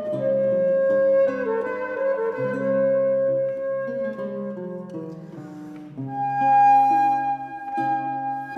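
Renaissance transverse flute playing a slow melody of long held notes over a plucked lute accompaniment. A higher held flute note entering about six seconds in is the loudest point.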